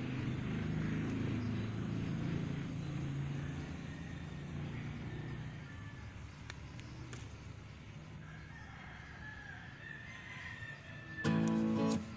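A rooster crowing faintly twice over a low, steady rumble that fades after the first few seconds. Acoustic guitar music starts near the end.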